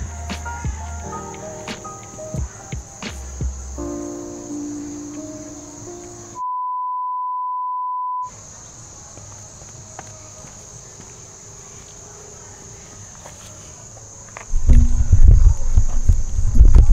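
A short stretch of music gives way to a steady 1 kHz reference tone lasting about two seconds, the test tone that goes with colour bars. Then comes quiet outdoor ambience with a steady high chirring of insects. Near the end a sudden loud low rumble on the microphone sets in.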